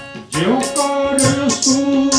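Sikh kirtan: a man sings over a harmonium's steady held notes and tabla strokes. The level dips briefly about a quarter second in, then the voice comes back in with an upward glide.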